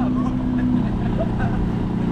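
A motor vehicle's engine running steadily with a low hum whose pitch drops slightly about a second in. Faint voices are heard over it.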